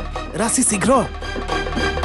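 Dramatic background score. Rhythmic music is broken about half a second in by a short hissing swish with swooping, bending tones, a stinger effect, and the music picks up again about a second later.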